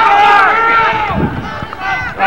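Several people shouting at once in raised, overlapping voices, loudest in the first second. These are players and spectators yelling during lacrosse play.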